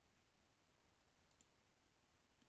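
Near silence: faint room tone with a single faint click about a second and a half in.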